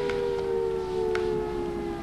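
A sustained electronic siren-like tone, several pitches held together and sliding slowly downward.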